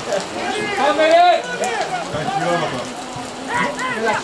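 Indistinct shouting voices at an outdoor football match, loudest about a second in and again near the end, with a light patter of rain underneath.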